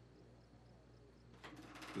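Near silence with a low steady hum, then a quick run of faint clicks, many to the second, in the last half second.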